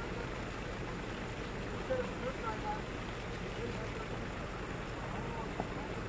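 Maruti Suzuki Baleno's engine running at low revs as the car crawls over rocks through a shallow stream, with a steady rush of stream water. Faint voices come through briefly about two seconds in.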